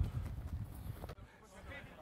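Faint thuds of players' feet running on a grass pitch over a low rumble. The sound drops away after about a second.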